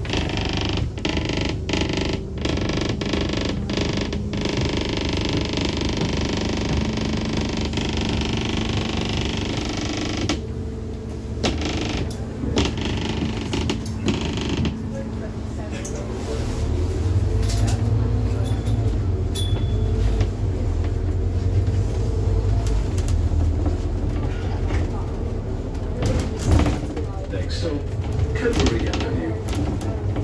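Inside a moving Scania N230UD Alexander Dennis Enviro 400 double-decker bus, heard from the upper deck: the body and fittings creaking and rattling over a steady engine drone. The low rumble grows louder about halfway through.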